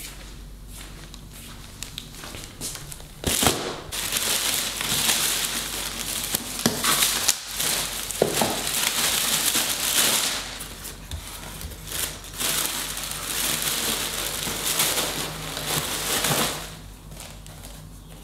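A plastic mailer bag and the wrapping inside it crinkling and rustling as a parcel is torn open and a pair of sneakers is unwrapped. The sound starts suddenly about three seconds in and runs on as steady crackling for about thirteen seconds before stopping.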